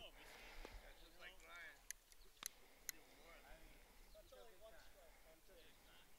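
Near silence, with faint distant voices coming and going and three short sharp clicks about two to three seconds in.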